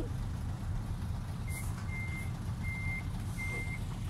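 Cargo truck's reversing alarm beeping as it backs up: one steady tone, about once every 0.7 seconds, starting about a second and a half in, over a low rumble.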